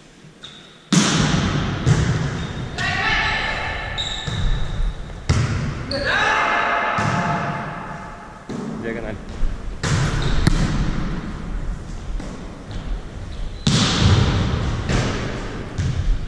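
A volleyball being struck by hands in a rally: sharp slaps several times, a few seconds apart, ringing on in a large gym hall. Players' voices call out between the hits.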